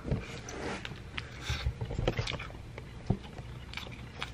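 Eating sounds: a barbecue rib being bitten into and chewed, heard as irregular short wet clicks and smacks.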